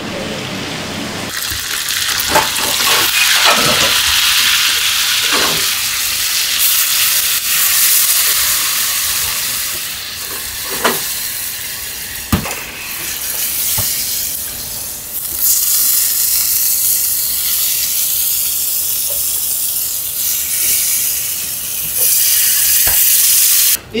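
Shrimp and garlic frying in hot oil in a steel skillet over a gas burner: a loud, steady sizzle that starts about a second in and cuts off suddenly just before the end, with a few light knocks of the pan or a utensil along the way.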